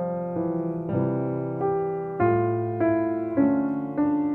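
A 9-foot German Steinway concert grand piano played slowly and gently: a melody over chords, a new note or chord struck about every half second and left to ring and fade.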